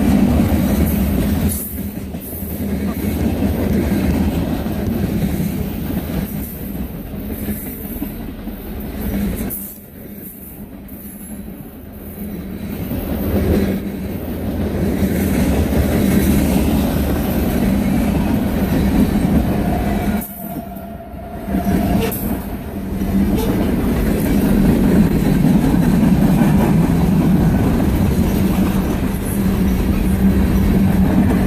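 Freight cars of a long mixed freight train rolling past close by, a continuous rumble and clatter of steel wheels on rail. The sound eases for a couple of seconds about ten seconds in and again about twenty seconds in.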